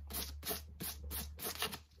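Fine sandpaper, 800 grit, rubbed quickly back and forth over the lizard-skin vamp of a cowboy boot: a steady scratchy rasping at about five strokes a second.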